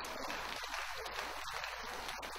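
An audience applauding, quiet and steady.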